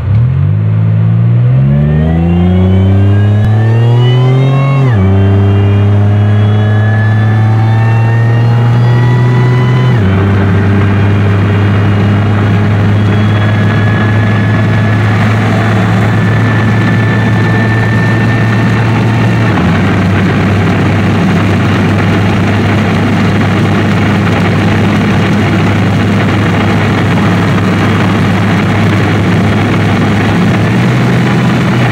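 Supercharged GM 3800 V6 with headers and a catless downpipe accelerating hard at full throttle through the gears, heard from inside the cabin. The revs climb steadily and drop at each upshift, about 5, 10 and 20 seconds in.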